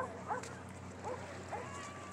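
Animal calls, about six short yelps in quick succession, each rising and falling in pitch.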